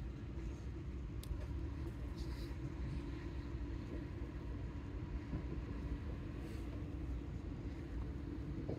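Passenger train running, heard from inside the carriage: a steady low rumble with a constant hum and a brief click about a second in.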